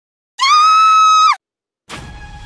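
A loud, high-pitched scream held at one steady pitch for about a second, sliding down as it cuts off.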